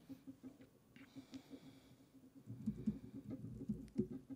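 Faint laptop keyboard typing: scattered soft key clicks, more of them in the second half, over a low steady hum.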